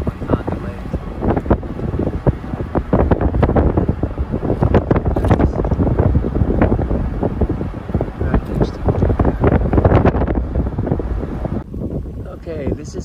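Wind buffeting the microphone: a loud, uneven rushing that swells about three seconds in and eases off near the end.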